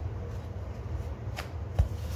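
Wooden rolling pin rolling flatbread dough back and forth on a floured board: a steady low rumbling rub. There is a sharp click a little past halfway and a low knock of the pin against the board near the end.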